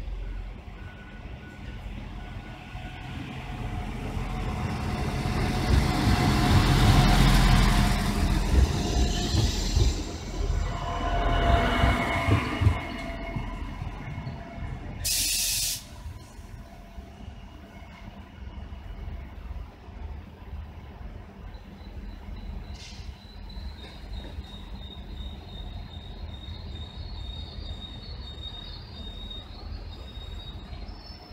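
PESA SA133 diesel railcar pulling into the station: its engine and wheels rumble louder as it nears and passes close, then squeal as it brakes. About halfway through there is a sharp hiss of released air lasting about a second, after which the railcar stands with its engine running and a faint high whine.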